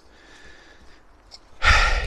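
A man's breath, drawn in quickly and loudly just before he speaks again, after about a second and a half of faint background hiss.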